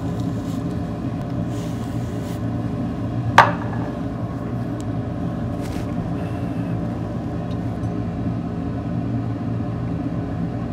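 A steady low hum, with one sharp click about three and a half seconds in.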